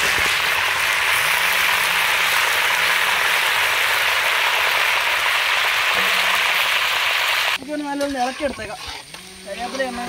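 Curry leaves sizzling in hot oil in an iron kadai, a loud steady frying hiss that cuts off suddenly about three-quarters of the way through, giving way to quieter sounds and voices.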